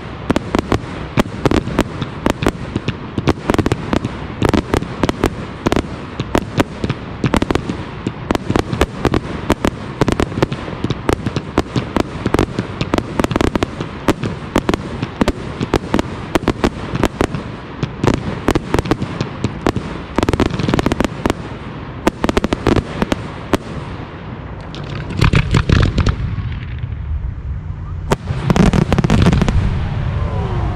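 Daytime firework display: a dense, continuous crackle of many small sharp reports from crackling stars falling out of colour-smoke shells. Near the end, after a brief lull, two louder clusters of deeper booms come from bigger bursts.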